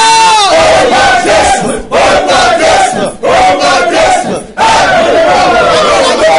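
Loud shouted prayer by a woman and a man, voices overlapping, in phrases broken by brief pauses about two, three and four and a half seconds in.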